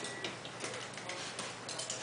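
Plastic trigger spray bottle of rubbing alcohol being pumped at a scalpel and forceps: a run of short clicking squirts, irregularly spaced.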